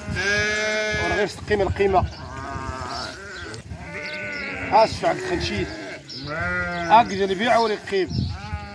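Sheep bleating: one long bleat at the start and another about six and a half seconds in.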